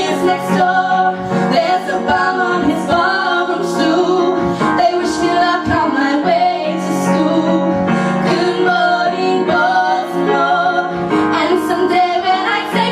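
Female voices singing live over a sustained instrumental accompaniment, the melody moving over long held low notes.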